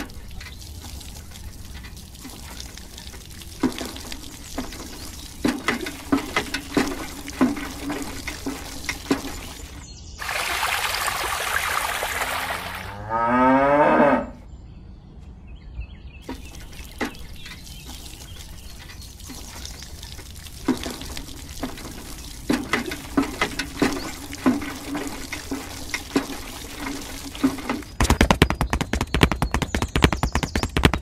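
Miniature hand pump worked by its lever, with repeated clicks and squeaks from the handle. About ten seconds in, water pours noisily into a small tin bucket for a few seconds, ending in a short sweeping tone. A fast dense rattle comes near the end.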